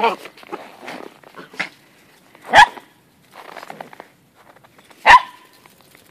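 Dogs at play, one giving two sharp, loud barks about two and a half seconds apart, with a few softer short sounds in between.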